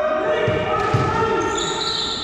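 Doubles paddleball rally on a hardwood racquetball court: the rubber ball smacks off paddle and walls twice, about half a second and a second in, echoing in the enclosed court. Long, high-pitched squeaks of sneakers on the wood floor run underneath.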